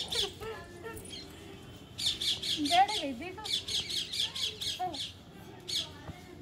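A bird calling in rapid runs of sharp, high squawks, about eight a second: one run about two seconds in and a longer one from about three and a half seconds, with single calls near the start and near the end.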